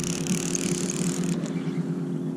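Spinning reel on a fish, its gears giving a fast ratcheting whir for about the first second and a half, over a steady low hum.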